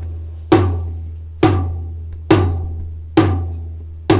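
The second rack tom of a drum kit struck four times, about once a second, for a sound check; each hit rings out with a low tone and fades before the next.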